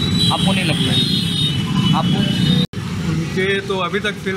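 Street traffic noise: a steady low vehicle-engine rumble with a high steady whine above it and a few brief words. It cuts off abruptly a little over two and a half seconds in, and men's talk follows.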